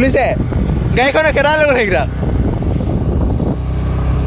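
Motorcycle in motion, a steady low rumble of engine and riding noise, with a voice calling out twice over it.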